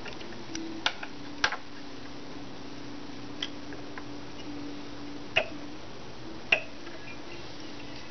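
Sharp small clicks and taps of a hook and fly-tying vise being handled as the hook is set in the jaws: about four distinct clicks spread through the stretch, over a steady low hum.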